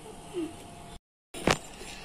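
Quiet kitchen room tone, broken by a moment of dead silence at an edit, then a single sharp knock. The mixer-grinder that was announced is not heard running.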